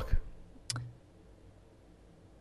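A single short click about two-thirds of a second in, in a pause between speakers; otherwise near silence.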